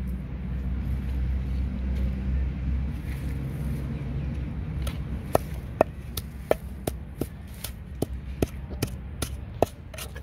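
A steady low hum, then from about halfway through a wooden pestle pounding salt and chilies in a wooden mortar, with sharp knocks about two or three times a second.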